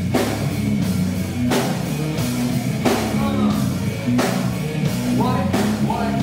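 Live nu metal band playing loud: electric guitar, bass guitar and drum kit, with heavy hits landing about every second and a half.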